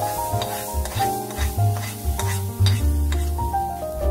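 Hot tadka oil sizzling as it is poured into a pot of sambar and stirred in, with a steady hiss and a few sharp crackles. Background music with a melody and bass runs under it.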